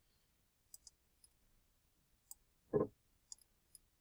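Faint, sharp computer-mouse clicks, scattered half a dozen times. About three-quarters of the way through there is one brief, louder vocal sound.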